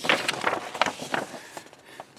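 Paper rustling and crackling as a page of a model kit's instruction booklet is turned by hand. The sound fades out near the end.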